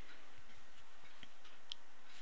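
Three faint, scattered keystroke clicks on a computer keyboard over a steady background hiss.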